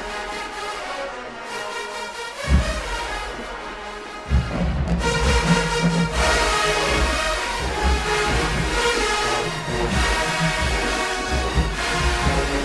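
A large marching band's brass section of trumpets, mellophones and sousaphones, with clarinets, playing a loud show-band piece. A heavy low hit comes about two and a half seconds in, and the full band comes in louder at about four seconds with strong low beats.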